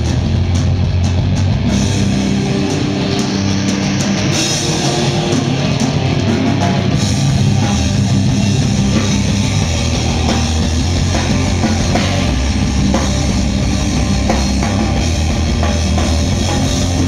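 Live hardcore punk band playing loud and steady: distorted electric guitars, bass and a drum kit.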